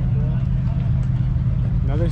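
A car engine idling steadily, with voices talking faintly in the background.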